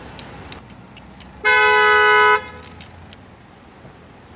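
Car horn giving one steady honk of about a second, starting about a second and a half in, sounded at a pedestrian in the car's path.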